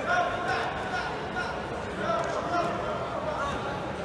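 Indistinct voices echoing in a large sports hall: several people talking and calling out at once, none clearly in front.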